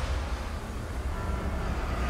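A low, steady rumble with faint hiss above it: quiet ambient sound design in a movie trailer's soundtrack during a lull between music hits and dialogue.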